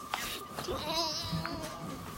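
A person's quiet, wavering whine, about a second long, muffled into bedding, with a bleat-like wobble in the pitch. A faint steady high hum runs underneath.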